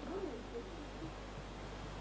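Faint, distant voices murmuring in a lecture hall under a steady background hiss, with no clear words.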